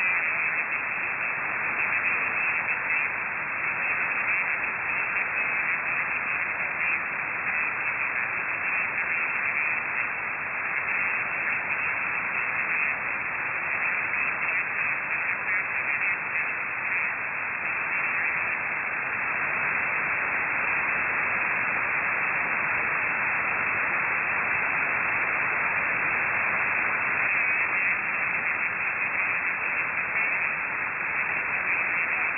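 Shortwave receiver on the 40-metre amateur band putting out steady hiss of band noise, with no readable voice: the other station's reply is not heard at this receiver.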